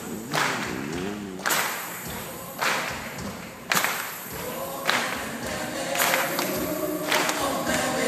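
Live pop concert heard through a phone microphone in a large hall: several voices sing a slow, wavering melody over a steady beat, with a sharp clap-like hit about once a second.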